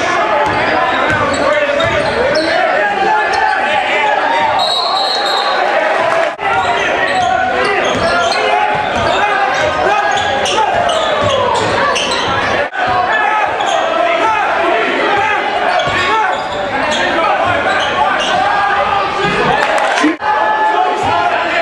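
High school basketball game in a gymnasium: a loud, continuous crowd of many voices shouting and cheering, with the ball bouncing on the hardwood court. The sound drops out briefly twice where the clips are cut.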